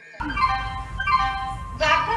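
Railway station public-address chime: a short run of electronic tones stepping from one pitch to another, the signal that an announcement is about to be made, over a low rumble. An announcer's voice starts near the end.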